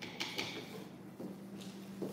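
A few faint light clicks and knocks of plastic toy kitchen pieces being handled, over a faint steady hum.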